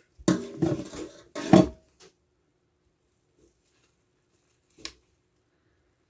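House cat meowing loudly, two calls in the first two seconds, the second one louder. A single faint click follows about five seconds in.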